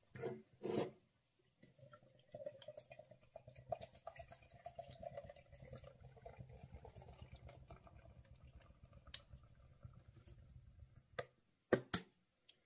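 Lager poured from a can into a glass tankard: a faint, steady gurgling pour lasting about nine seconds. Two short knocks come just before the pour, and sharp clicks come near the end.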